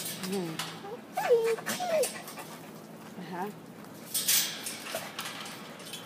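Pit bull whining behind a kennel fence: two short high whines that bend up and down, about a second in, among faint scuffling and breathy noises.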